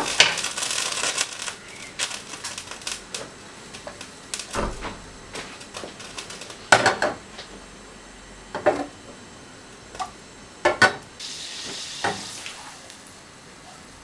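Aluminium saucepan set down on a gas hob grate, followed by a few separate knocks and clinks of cookware, over faint sizzling of butter melting in the pan.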